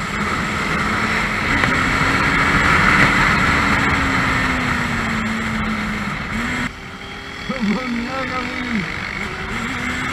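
Motorcycle engine running at road speed under heavy wind rush on a camera mounted on the bike. The engine note sinks slowly over the first few seconds, and the sound drops suddenly about two-thirds of the way in.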